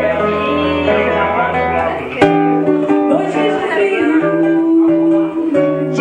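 Live acoustic guitar accompanying a woman singing into a microphone, amplified through a PA, with voices talking in the room; a sharp knock about two seconds in.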